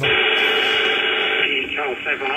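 Kenwood HF transceiver receiving single-sideband on 20 metres: steady band hiss with faint constant tones, and about one and a half seconds in the other station's voice starts coming through, narrow and band-limited over the static.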